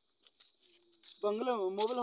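A man's voice: one drawn-out vocal sound starting a little past the middle and lasting about a second, after a near-quiet opening with a few faint clicks.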